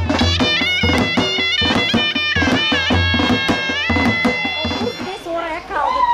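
Traditional folk dance music: a shrill, reedy wind instrument plays a bending melody over drum beats and a steady low bass. The music stops about five seconds in and gives way to crowd chatter.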